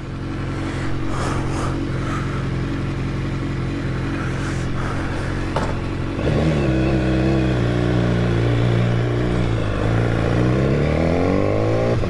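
BMW S1000R inline-four engine idling steadily. About six seconds in, the throttle opens and the bike pulls away, louder. The pitch dips slightly, then climbs near the end as it accelerates.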